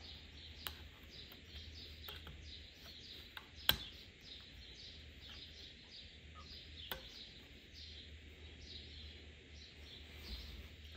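Faint bird chirps repeating steadily in the background, with a few sharp clicks from handling a fog light housing, the loudest a little under four seconds in.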